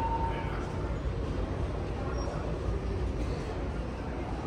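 Busy airport terminal background noise: a steady low rumble with a faint murmur of distant voices. A thin steady tone stops about half a second in.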